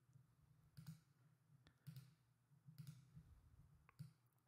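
Faint computer mouse clicks, a few of them spaced about a second apart, over near-silent room tone.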